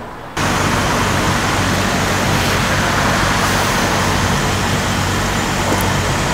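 A loud, steady rushing noise with a low hum beneath it. It starts suddenly about a third of a second in and holds without change.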